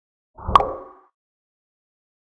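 A single short pop sound effect, a plop with a brief ringing tail, about half a second in.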